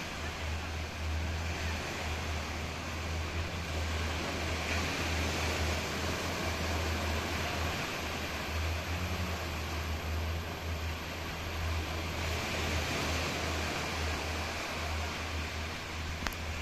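Small waves washing onto a sandy beach, a steady surf hiss, over a constant low rumble.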